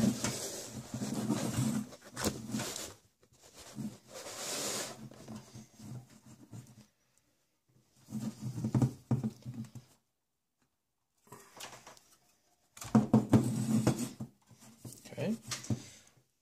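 Sheet-metal hard drive cage of a desktop PC tower rattling and scraping against the case as it is worked loose and pulled out, in several short bursts with pauses between.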